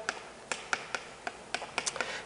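Chalk tapping against a chalkboard while a word is written: about seven short, sharp clicks, several close together near the end.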